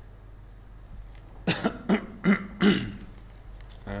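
A man coughing four times in quick succession, starting about one and a half seconds in; the coughs are the loudest thing in the stretch.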